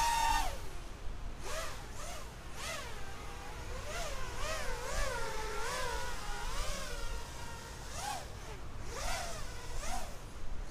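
Quadcopter's DYS BE1806 brushless motors spinning tri-blade 5045 props on a 4S battery: a whine that rises and falls in pitch with the throttle. It comes in several short punches, with a longer wavering stretch in the middle.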